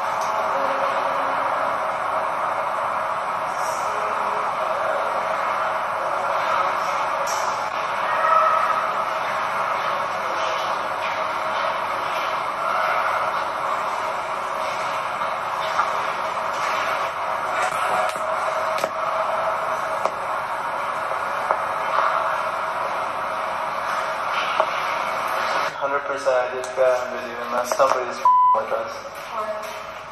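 An amplified phone recording of an empty stairwell with a steady hiss of background noise. Faint pitched traces in the noise are what the footage offers as a woman's soft singing, which a listener may take for mumbling. Near the end come a few voices and a short beep.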